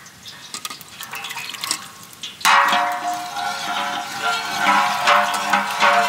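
Cooking oil poured from a steel pot into a large metal cooking vessel: a loud, steady rush of liquid that starts about two and a half seconds in. Background music with held notes plays under it.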